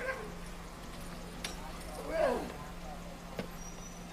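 Steady low street hum with a couple of faint knocks, and one short shouted cry from a person about two seconds in.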